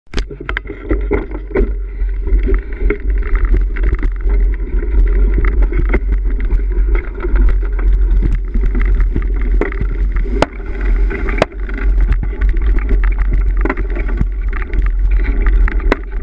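Bicycle ridden fast over rough grassy ground: a heavy steady wind rumble on the microphone, with the bike rattling and clicking over the bumps and two sharper knocks near the middle.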